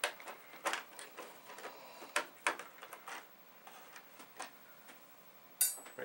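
Light, scattered clicks and taps as tiny screws and the keyboard case are handled, with a brief bright clink near the end.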